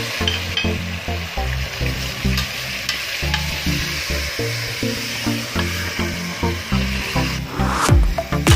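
Raw meat sizzling in oil in an aluminium pot as it is stirred with a metal ladle, a steady hiss. Background electronic music with a rhythmic bass line plays over it.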